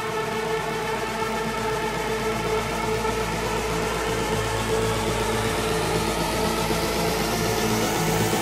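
Electronic house music build-up: held synth chords under a noise sweep that rises steadily in pitch through the second half, with no clear beat.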